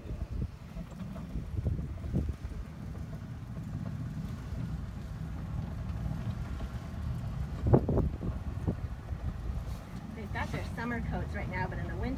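Low, steady rumble of a moving tour vehicle heard from on board, with faint voices near the end.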